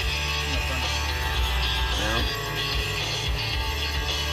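Rock music with guitar playing steadily.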